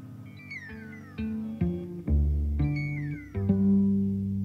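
Instrumental music from a guitar, cello and drums trio: plucked low notes ring on, and twice high sliding tones fall steeply in pitch, a little like a cat's meow.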